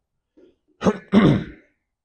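A man clearing his throat about a second in, in two quick parts, a short catch then a slightly longer rasp.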